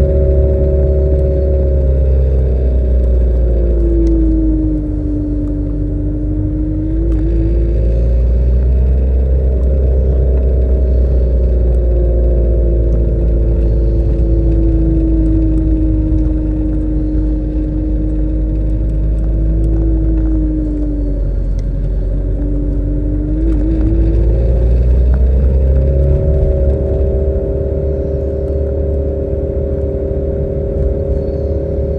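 Car engine and road rumble heard from inside the cabin. The engine's hum drops in pitch and rises again about three times, as the car slows for bends and picks up speed again.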